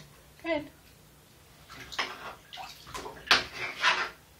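Bath water splashing and sloshing as a toddler's hands move through it, an irregular run of splashes in the last two seconds.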